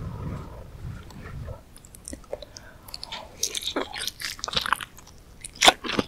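Close-miked biting and chewing of soft Korean fish cake (eomuk) off a skewer: low chewing at first, then from about halfway a dense run of sharp mouth clicks, loudest just before the end.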